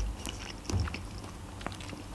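Close-miked mouth sounds of a woman chewing a mouthful of sushi roll: faint, scattered soft clicks with a soft low thump about a second in.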